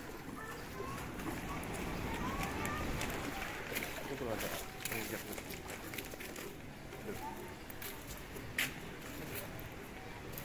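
Indistinct voices in the distance over steady outdoor background noise, with a few sharp knocks or clicks.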